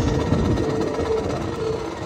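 Marching band music dying away: a held note sounds over a low rumble, and the whole sound fades steadily through the two seconds.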